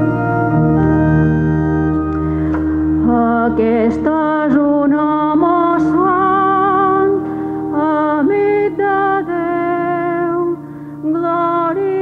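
Church organ playing the entrance hymn of a Mass: held chords alone at first, then a singer with a wavering vibrato joins the melody about three seconds in.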